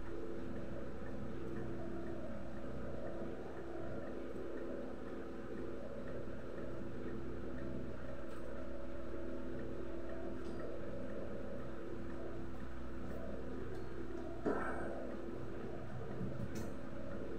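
Steady low hum of a running motor, such as a fan, with one short knock near the end.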